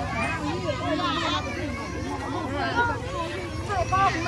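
Several people talking, the voices indistinct and overlapping, over a steady low hum.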